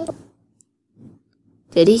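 A woman's voice: a short hum at the start, then a faint click, and she begins speaking near the end.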